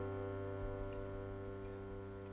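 A sustained keyboard chord ringing out and slowly fading, with no new notes struck.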